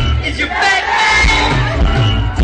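Live rock band playing, with a steady bass and drum low end, while a crowd shouts and cheers loudly over the music from about half a second in.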